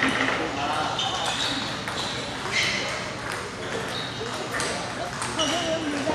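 Table tennis balls striking tables and paddles: short, sharp pings scattered irregularly, about half a dozen over several seconds.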